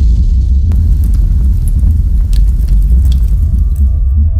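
Cinematic explosion-and-fire sound effect: a loud, deep rumble with scattered sharp crackles over it.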